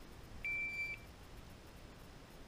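Electronic shot timer giving one steady, high beep about half a second long: the start signal for the shooter to begin the stage.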